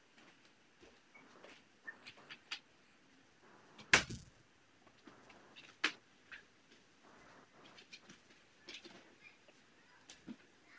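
Quiet room with scattered small clicks and knocks: a sharp knock about four seconds in, the loudest sound, and another about six seconds in.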